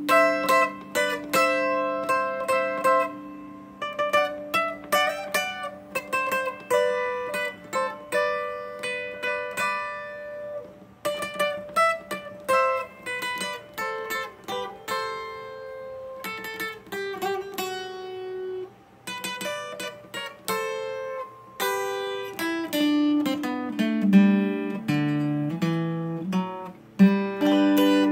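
Twelve-string acoustic guitar played fingerstyle: a slow bolero melody picked note by note over plucked chords, each note ringing on doubled strings. A lower bass line joins in near the end.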